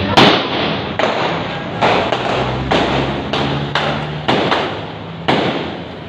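Gunfire in a shootout: about a dozen sharp shots at an irregular pace over five seconds, the loudest right at the start, over steady street noise.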